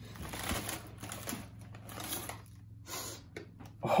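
Packaging rustling and crinkling in quick, irregular scratches and clicks as it is unwrapped by hand on a counter, easing off shortly before the end.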